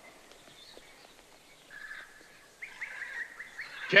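Small caged birds chirping softly, with a brief call at about two seconds and a quick run of repeated chirps in the second half, over faint scattered clicks.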